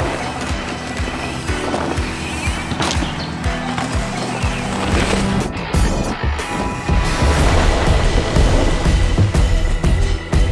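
Music over the sound of a mountain bike riding a leaf-covered dirt trail: tyres rolling, with rattles and knocks from the bike. The music's bass comes in louder about seven seconds in.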